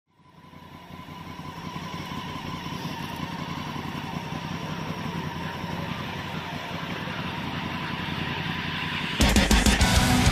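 A low, rumbling drone fades in from silence and slowly swells, then loud heavy rock music with distorted electric guitar cuts in suddenly about nine seconds in.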